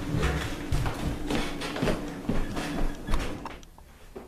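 Irregular thuds and knocks of people moving about and handling things in a room, dying away about three and a half seconds in.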